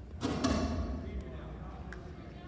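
A referee's whistle blast, short and loud, with a ringing echo through a large gym hall: the signal that starts the wrestling.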